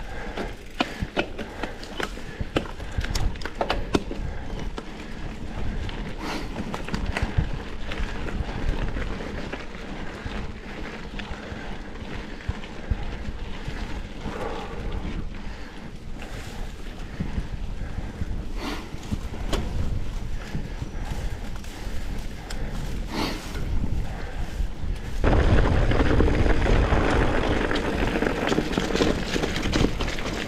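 Mountain bike riding noise picked up by a handlebar camera: knobby tyres rolling on a dirt trail, with frequent small rattles and knocks from the bike over bumps. About 25 seconds in it becomes louder and rougher as the tyres crunch over dry fallen leaves.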